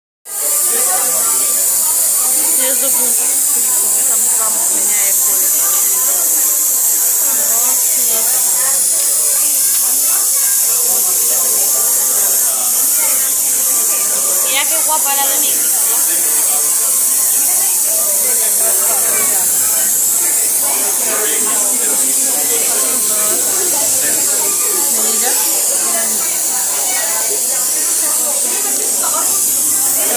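A glassworker's lampworking torch flame hissing loudly and steadily, with people's voices murmuring underneath.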